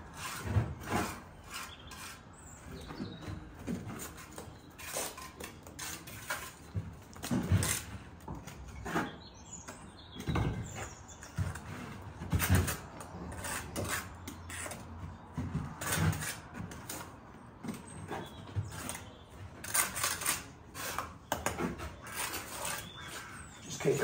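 Steel brick trowel working on bricks and mortar, tapping bricks down and scraping off mortar in a string of irregular sharp taps and scrapes.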